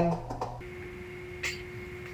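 A voice trails off at the very start, then a steady faint hum holds two fixed tones, one low and one high. About one and a half seconds in there is a single light click, like a metal transmission part being handled.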